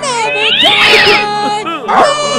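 A high, strained, cat-like wail that sweeps up in pitch and then back down, wavering, in place of a sung line.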